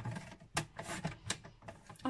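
Paper trimmer's sliding cutting head drawn along its rail, slicing a strip of patterned paper, with two sharp clicks.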